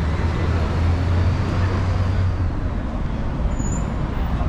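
Road traffic: a passing vehicle's low engine rumble, strongest in the first half and fading out a little past halfway, over steady street noise.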